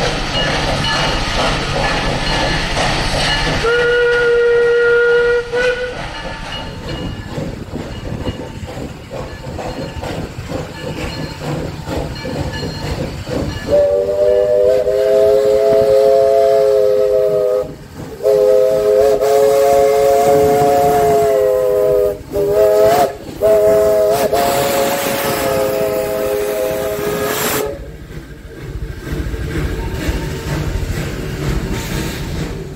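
Steam locomotive working, with a short single-note whistle blast a few seconds in. A chord steam whistle then sounds three long blasts with a brief toot between the second and third, and train cars roll past near the end.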